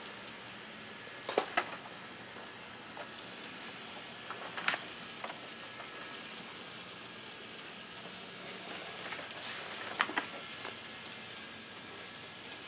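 Bachmann N-gauge Peter Witt streetcars running on the track: a faint steady hiss of small motors and wheels, with a few light clicks scattered through it.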